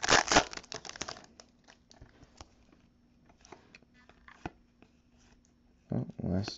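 Foil trading-card pack wrapper crinkling as it is torn open, dense for about the first second. After that come only faint scattered clicks and rustles as the cards are pulled out and handled.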